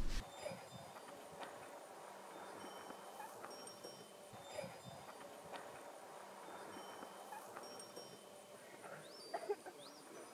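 Faint open-air ambience with scattered short, high bird chirps and whistles, including two quick rising whistles near the end. Soft steps through dry grass, a little louder near the end.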